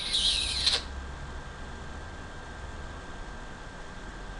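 Steady low hum of room tone, opened by a brief hiss lasting under a second.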